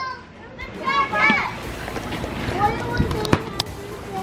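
Children shouting and playing around a swimming pool, with one raised child's voice about a second in and a few sharp knocks about three seconds in.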